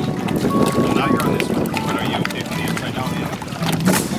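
Wind buffeting the microphone as a steady low rumble, with faint, indistinct voices and a few short high tones over it.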